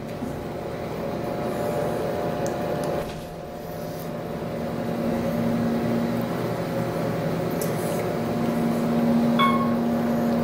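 Otis elevator car running upward between floors: a steady machinery hum with the rumble of the ride. About nine seconds in a short electronic chime sounds as the car reaches the fourth floor.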